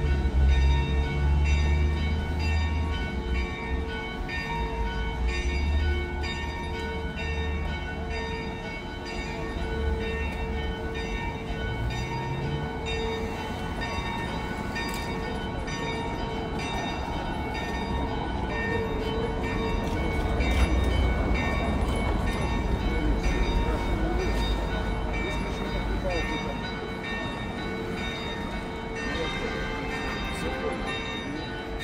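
Church bells ringing on and on, a cluster of steady overlapping tones held throughout, over a low rumble and the chatter of people.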